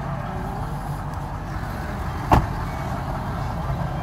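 Steady low rumble of a 2017 Ford F-250 Super Duty running, heard from inside its cab, with a single short knock a little after two seconds in.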